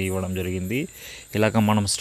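A man's voice talking, holding one drawn-out sound for most of the first second, then pausing briefly before speaking again. A faint, steady, high-pitched chirring runs underneath.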